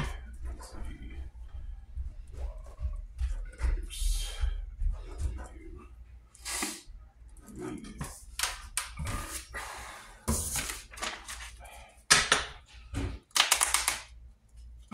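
A pen scratching across paper in short strokes while writing, then near the end a deck of playing cards being riffle-shuffled in a quick, loud run of flicking clicks.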